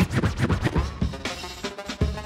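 Hip hop music played by the battle DJ, with quick turntable scratches over the beat, densest in the first second.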